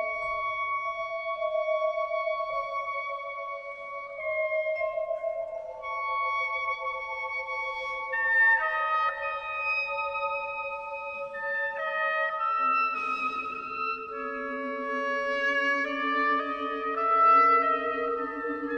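Oboe and string orchestra playing a slow classical passage of long, held notes that shift pitch every few seconds; a lower string line joins about two-thirds of the way through.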